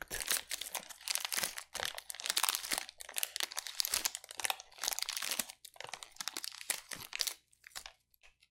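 Protein-bar wrapper crinkled and crushed in the fingers close to the microphone: a dense, continuous run of sharp crackles that thins to a few scattered clicks near the end.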